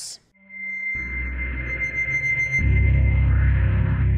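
Sampled guitar pad, the Distraction patch of 8Dio's Emotional Guitars Pads, played from a keyboard. A thin, steady high tone rings over a low drone, and deeper notes swell in about two and a half seconds in.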